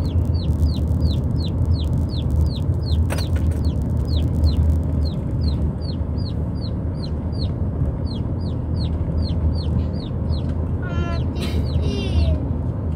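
Burma chickens riding in the car, calling with short high falling peeps about three a second, over the steady low drone of the car on the road. A single sharp click sounds about three seconds in.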